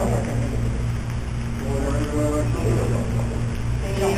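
Steady low hum of room or recording-system noise, with a faint, distant voice briefly heard in the middle.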